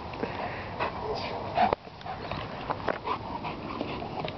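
A dog making short, excited sounds as it jumps about playing for a stick. The loudest comes about one and a half seconds in and cuts off sharply.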